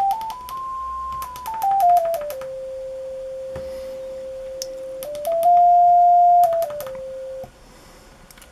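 Pure sine-wave tone from a PSoC CY8C29466 digital signal generator played through a small speaker, stepping note by note up from 523 Hz to about an octave higher and back down. It holds the low note, then steps up to 698 Hz and back before stopping shortly before the end. Faint clicks come with the pitch steps.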